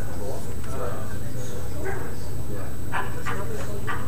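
Indistinct conversation among people in a large room, over a steady low hum, with a few short sharp sounds about three seconds in.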